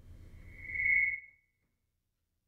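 A single steady high whistling tone, about a second long, that swells and then dies away, over a faint low rumble.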